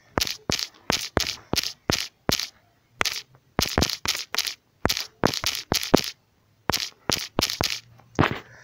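Typing on a smartphone's on-screen keyboard: a quick, irregular run of short, sharp key-tap clicks, about two or three a second.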